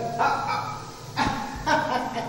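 Three short bark-like yelps: one at the start, one about a second in and one near the end.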